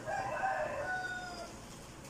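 A rooster crowing once, a single call about a second and a half long that fades out.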